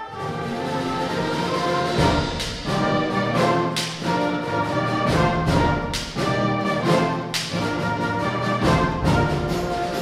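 A middle school concert band playing a Western-style piece: the full band with brass comes in loud right at the start, over a softer line just before, with repeated sharp percussion hits throughout.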